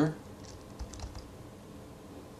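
A few faint keystrokes on a computer keyboard, about half a second to a second in, as a terminal command is entered.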